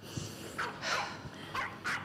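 A dog barking, four short barks about a second apart in pairs, the second one the loudest.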